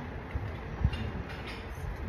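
Low rumble of wind and handling noise on a phone's microphone, with a thump a little under a second in.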